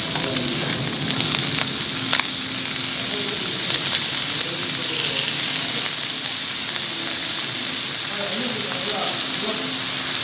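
Slices of pork belly and marinated beef sizzling on a hot Korean barbecue grill pan: a steady frying hiss, with a couple of light clicks of metal tongs turning the meat.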